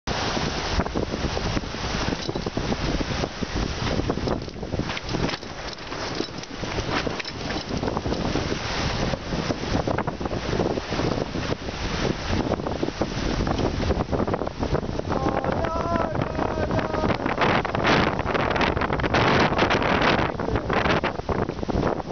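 Wind buffeting the microphone in uneven gusts, over the rush of water along the hull of a sailing yacht heeled under sail in choppy water.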